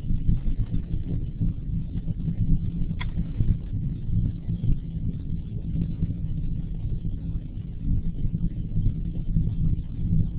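Low, uneven rumbling background noise picked up by an open microphone on an online conference call, with a single click about three seconds in.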